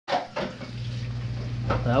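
Two sharp knocks right at the start, then the steady low hum of a running oven.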